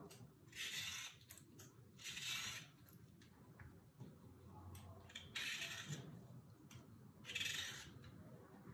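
A vegetable peeler scraping strips of peel off citrus fruit, an orange and then a lemon: four short, faint scraping strokes a second or two apart, with light clicks between.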